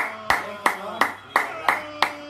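A person clapping hands slowly and evenly, about three claps a second, with a faint steady hum underneath.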